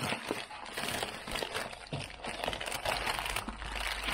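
Packaging being handled: a bag crinkling and rustling as a boxed camera is slid into it, in quick irregular crackles.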